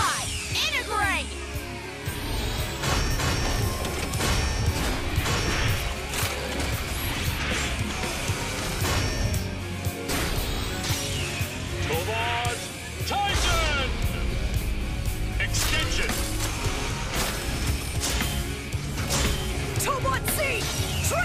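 Animated-series robot transformation sequence: upbeat music with a heavy beat under a run of mechanical clanks, crashes and whooshes. The bass drops out briefly about 10 s in and returns strongly about 13 s in.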